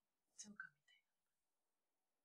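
A woman speaking one short line softly, close to a whisper, lasting under a second.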